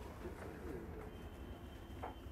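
Faint pigeon cooing over quiet room tone, with a faint steady high whine coming in about halfway.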